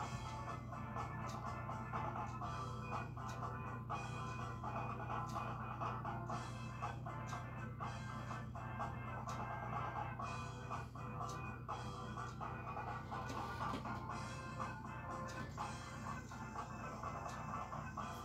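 Background music playing steadily at a moderate level, with sustained tones.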